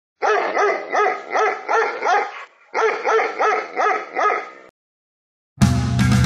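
A dog barking rapidly, about three barks a second, in two runs separated by a brief pause. It stops, and after a moment of silence heavy metal music with guitars comes in loudly near the end.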